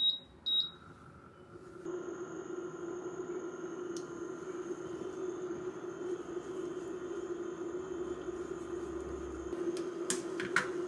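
Portable induction cooktop beeping twice as its touch control is pressed, then running with a steady electrical hum and a faint higher whine as it heats the pan.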